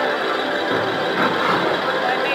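Electronic slot machine music with layered chiming tones during a free-spins bonus round, playing steadily.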